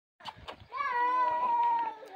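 One of the Nelore cattle lowing: a single long, steady call, slightly falling at the end, after a couple of faint knocks.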